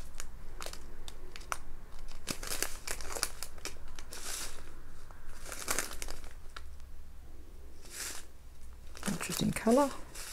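Clear plastic zip-lock bags of square diamond-painting drills handled and turned over, the plastic crinkling in several short rustles, with small scattered clicks of the drills shifting inside.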